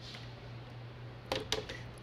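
A couple of short clicks as the lid is pulled off a plastic blender jar, over a faint steady low hum.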